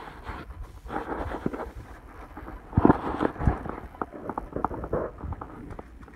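A dog's food bowl is set down on a rug with handling rustle, then a few thumps and clatter about halfway through, followed by scattered light clicks as the dog noses into the bowl of food.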